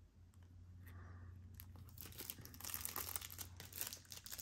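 Faint crinkling and tearing of packaging being handled and opened, a scattered crackle that starts about a second and a half in and grows busier and louder toward the end.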